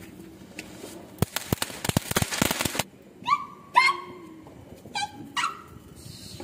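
A burst of Diwali firecrackers popping and crackling rapidly for about a second and a half. After it come four short, high-pitched cries, each falling slightly in pitch; the first two are the loudest sounds.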